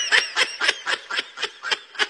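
A person laughing in a run of short, rapid bursts, about four a second.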